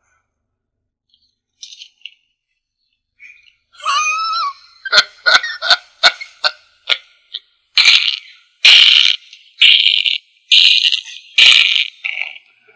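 A man laughing, starting about four seconds in: a short rising giggle, then a run of breathy bursts of laughter about once a second.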